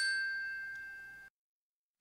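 A single bright chime note, the last of a glockenspiel-like intro jingle, rings and fades for about a second, then cuts off abruptly into silence.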